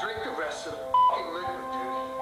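Background music with sustained notes, and a voice over it. About a second in there is a short, sharp beep, the loudest sound.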